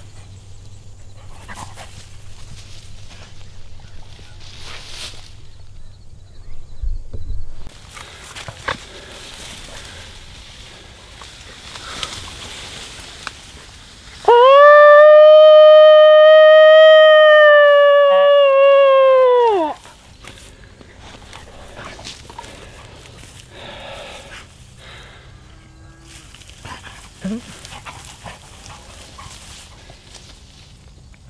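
Predator call sounding one long, loud imitation coyote howl, lasting about five seconds, holding a steady pitch and dropping away at the end.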